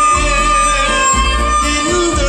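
Live band music: a violin plays long held notes over keyboard accompaniment and a low bass beat about once a second.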